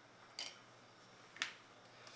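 Two light clicks about a second apart: wooden Scrabble tiles being set down on the game board.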